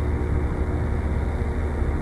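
Steady low electrical hum with an even hiss over it, the background noise of the sound system and recording, with nothing else standing out.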